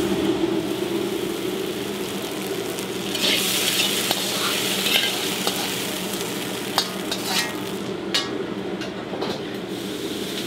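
Beef and shiitake mushrooms sizzling in a wok as a metal ladle stirs and scoops them out, over a steady low hum. A few sharp metal clinks of the ladle against the wok and plate come in the second half.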